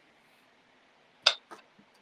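A sharp plastic click followed by a fainter one about a quarter second later, from a GoPro camera and its battery being handled during a battery swap.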